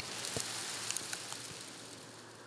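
Cover-crop seed grains pattering onto dry soil and corn litter: scattered light ticks over a faint steady hiss.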